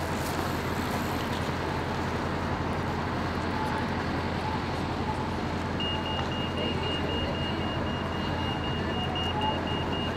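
Steady city street traffic noise with a low hum. About six seconds in, a rapid high electronic beeping starts, about four beeps a second.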